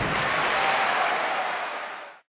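A large theatre audience applauding after the orchestra's final chord, the applause fading out near the end.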